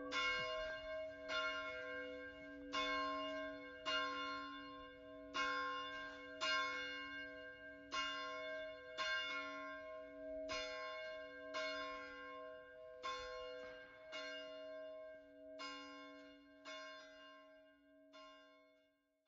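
Church bells ringing: a steady run of about fourteen strokes, one roughly every second and a quarter, each left to ring on. The ringing grows fainter throughout and dies away at the end.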